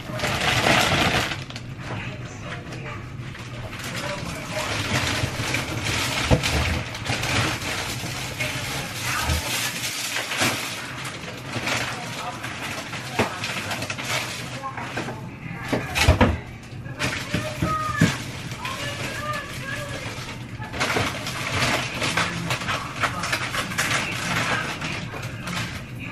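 A plastic bag crinkling and rustling as frozen chicken wings are handled, with irregular kitchen clatter and knocks, one sharp knock partway through.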